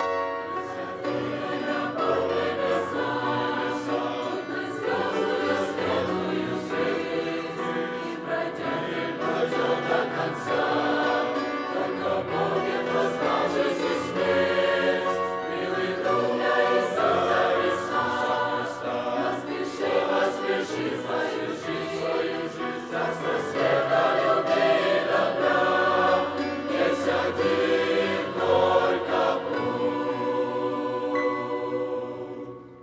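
A youth choir of young men and women singing a hymn together in harmony, growing somewhat louder in the last several seconds.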